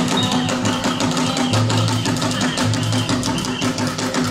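Live traditional Mozambican drumming: several hand drums played together in a fast, dense rhythm, with deep low drum tones under sharp slaps.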